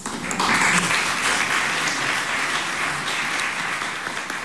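A roomful of people applauding, starting just after the beginning and holding steady, easing a little toward the end.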